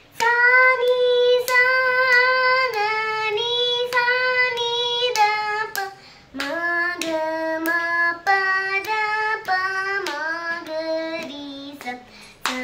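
A young girl singing unaccompanied in Sankarabharanam raga, holding each note and moving between them in clear steps. A first phrase sits high and steps down, there is a short break about six seconds in, and a second phrase starts lower and climbs.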